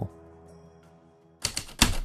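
Faint music fading out, then two loud, sharp typewriter key strikes close together near the end.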